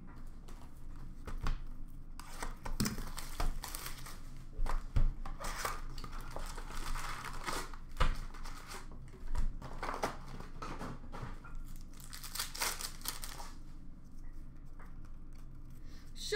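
Trading card packs being torn open and their wrappers crinkled, with scattered clicks and taps of cards and cardboard being handled; the tearing and crinkling run longest around the middle and again near the end.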